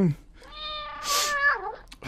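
A cat meowing, one long drawn-out meow that holds its pitch and then slides down as it ends.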